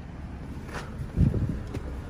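Low rumble of wind and handling on the microphone, with one low, muffled thump a little over a second in.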